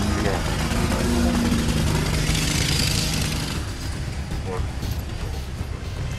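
Indistinct low voices over a steady low outdoor rumble, with a hiss that swells and fades about halfway through.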